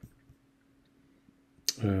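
A single sharp computer mouse click near the end, opening the Downloads stack in the Dock, over a faint steady hum.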